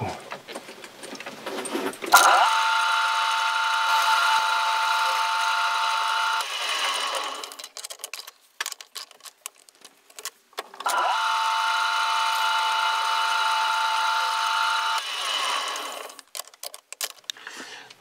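A metal lathe's spindle and gears whining as the machine is switched on, runs for about four seconds and winds down, twice, with a few seconds between, while a small chamfer is cut on a caprolon (cast nylon) wheel. Light clicks and handling noises fill the pauses.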